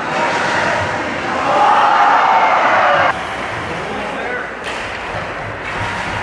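Ice hockey game sound in a rink: a mix of shouting voices over the scrape of skates and knocks of sticks and bodies against the boards. The voices swell about a second and a half in and cut off abruptly around three seconds in.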